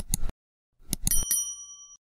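Subscribe-button animation sound effects: a quick cluster of clicks at the start, then more mouse-style clicks about a second in, followed by a bright bell ding that rings for just under a second.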